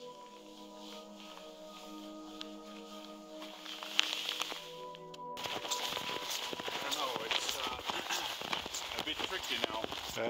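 Soft ambient music of sustained tones, with one sharp click about four seconds in. It cuts off suddenly just past halfway, giving way to footsteps crunching through snow and a voice.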